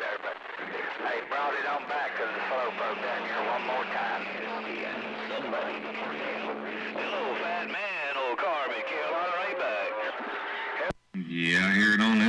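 CB radio receiver's speaker carrying several distant stations talking over one another, garbled and unintelligible, on strong signals, with steady whistling tones running under the voices. Near the end the received audio cuts off suddenly and a man's voice starts close by.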